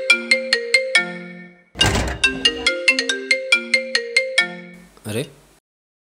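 Mobile phone ringing with a melodic ringtone: a quick, marimba-like tune of short notes played in two phrases, signalling an incoming call. It cuts off about five and a half seconds in.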